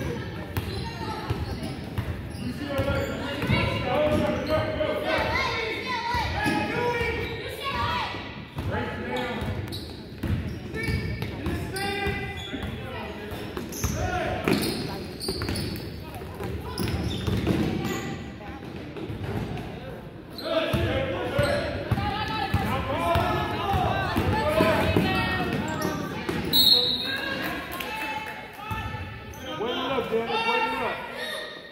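Basketball dribbling on a hardwood gym floor, with players and spectators calling out in a large, echoing gym. A short, high whistle blast from the referee sounds near the end, stopping play.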